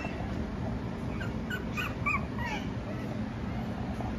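Pomeranian puppy whimpering: a quick run of about five short, high whines, some falling in pitch, starting about a second in. A steady low hum lies underneath.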